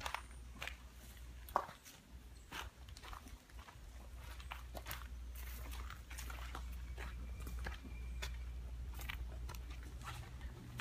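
Footsteps crunching through leaf litter and twigs, in irregular steps a few per second, over a steady low rumble.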